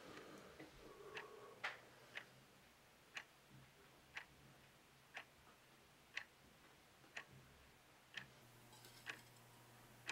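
A clock ticking quietly, about once a second. A soft crumbling rustle comes near the end as dried plant matter is broken up by hand on a metal tray.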